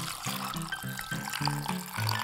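Watermelon juice pouring from a jug into a hollowed-out watermelon, a steady liquid trickle and splash, under background music with a simple melody of short notes.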